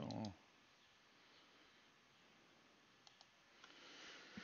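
Computer mouse double-clicked once, faintly, about three seconds in, over near silence with a low hiss.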